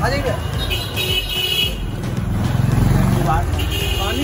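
Busy street background: a motor vehicle engine passes, loudest about three seconds in, under scattered voices and a steady high tone.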